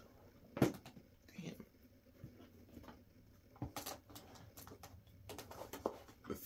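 Latches of a hard plastic rifle case clicking open one after another: a sharp snap about half a second in, then a few more clicks around four seconds and near the end as the case is unlatched and opened.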